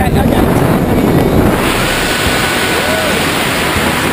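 Wind rushing over the camera microphone while descending under a parachute canopy, loud and steady, turning to a brighter hiss about one and a half seconds in.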